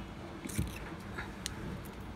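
Low steady room hum with a few faint small clicks and a short soft rustle of handling, one about half a second in and a sharper tick about a second and a half in.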